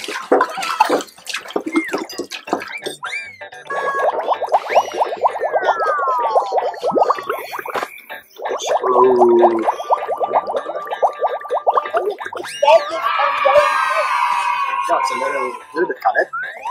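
Cartoon-style sound effects added in editing: a fast gargling rattle with a long falling whistle, a second rattle a few seconds later, then a jumble of falling tones with a sparkly twinkle near the end.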